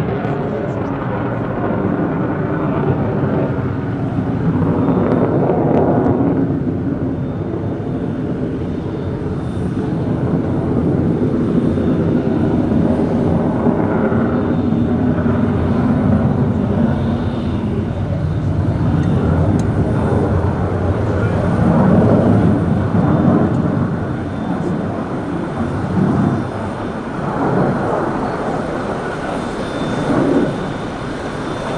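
JF-17 Thunder fighter's single Klimov RD-93 turbofan heard from the ground as the jet flies a display overhead: a continuous low jet roar that swells and fades as the aircraft manoeuvres.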